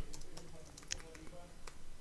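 Computer keyboard being typed on: a handful of faint, scattered key clicks.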